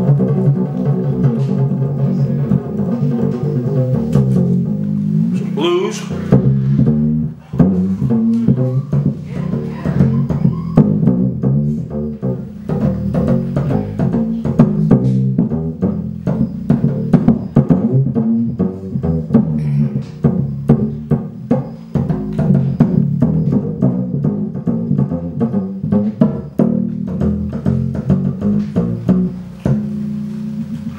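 Diddley bow, a single upright-bass D string tuned to C, struck rapidly with drumsticks: a fast, dense run of low, ringing string notes with the click of each stick hit, changing pitch as the string is touched at different points.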